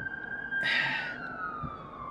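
Emergency-vehicle siren wailing: one long tone that holds high and then slowly slides down in pitch. A short burst of hiss comes just before a second in.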